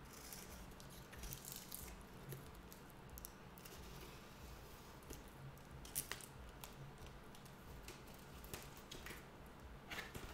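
Faint rustling and scraping of a cardboard mailer box and its paper packing being handled and opened, with scattered small clicks and a sharper click about six seconds in.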